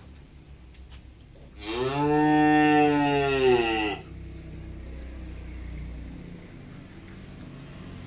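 A cow mooing once, one long call of about two seconds that starts about one and a half seconds in.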